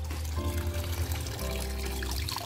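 Water running from a pipe into a guppy tank as it is topped up, over background music with a few steady held notes.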